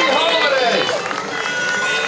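Parade music playing over loudspeakers, with singing voices that glide and bend in the first second, then settle into held notes.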